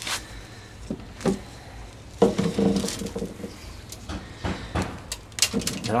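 Hands rummaging through loose compost in a plastic wheelbarrow, with new potatoes dropped into a plastic crate: scattered rustles and soft knocks, the sharpest about two seconds in and a run of small clicks near the end.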